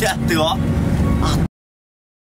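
Passengers' voices over the steady low rumble of a bus running on the road, heard from inside the cabin; about one and a half seconds in, all sound cuts out abruptly to dead silence.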